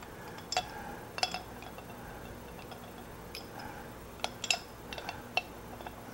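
A few light metallic clicks and clinks, spaced out over quiet, as a meat grinder's cutting blade is worked onto the square nut at the end of the feed screw inside the metal grinder head.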